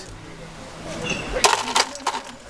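A few quick metal clinks about a second and a half in, as a fork is picked up from among the utensils on the table.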